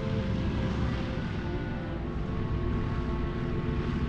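Steady drone of B-24 Liberator bombers' four radial engines in flight.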